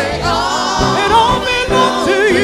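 Live gospel music: voices singing over a band, with a drum kit played with sticks.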